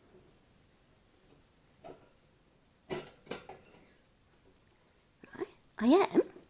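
Wire cage clinking and rattling a few times as its door and bars are handled, the sharpest knocks about three seconds in. Near the end a short voice sound with a rising pitch.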